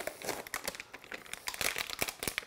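Plastic parts bags and packaging crinkling as they are handled and lifted from a cardboard box: a dense run of irregular crackles.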